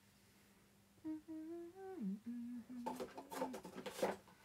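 A woman humming a short tune with her mouth closed, starting about a second in: a few held notes that step up, then drop low and hold. Near the end come a run of clicks and rustles.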